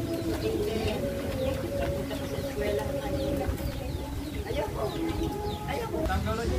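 Racing pigeons cooing at the loft, low wavering coos overlapping steadily, with the short high chirps of small birds above them.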